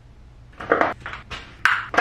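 A few short, soft handling noises with light clinks, about three of them in the second half.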